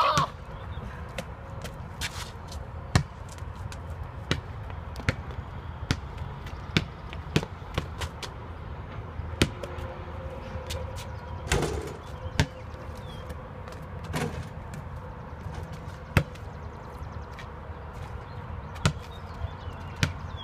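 Basketball bouncing on an asphalt driveway, with single, irregular thuds every second or so and a few louder ones. A steady low rumble of wind on the microphone runs underneath.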